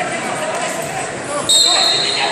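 Indistinct voices echoing in a large sports hall. About one and a half seconds in, a high, steady whistle starts sharply and is the loudest sound.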